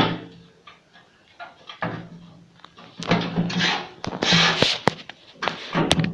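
Parts being handled while a panel is fitted under a flail mower's deck: a few short scrapes and knocks, then sharp clicks near the end.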